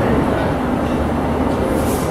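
London Underground S Stock train standing at the platform with its doors open, its equipment running with a steady low hum. A short high hiss comes near the end.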